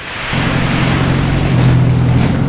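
Straight-piped exhaust of a 2015 Dodge Challenger R/T Plus's 5.7-litre Hemi V8 rumbling as the car drives, swelling in over the first moment and then holding steady, with rushing wind and road noise.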